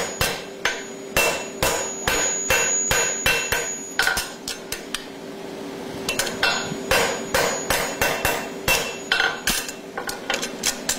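Quick, evenly paced hammer blows, two to three a second, from a farrier's 2 lb hammer working a hot steel horseshoe on the anvil, with a pause of about a second and a half near the middle. A steady tone runs underneath throughout.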